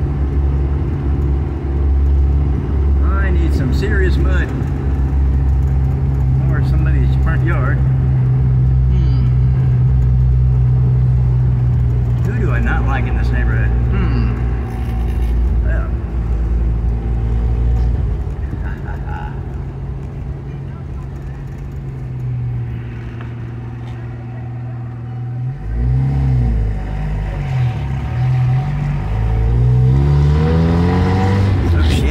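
Jeep engine running under way, heard from inside the cabin as a steady low drone. It eases off and quietens for several seconds, then revs up with a rising pitch twice near the end.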